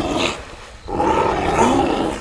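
An animal growling twice, harsh and loud, with a brief lull about half a second in.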